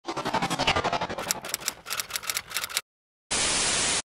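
Glitchy intro sound: a busy, music-like passage full of quick clicks stops abruptly. After a short silence comes a steady burst of static hiss, lasting under a second.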